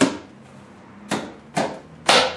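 Three sharp wooden knocks as heavy workbench parts, a leg assembly and a stretcher, are fitted and knocked together: the first, right at the start, is the loudest, then two more about a second and a second and a half in.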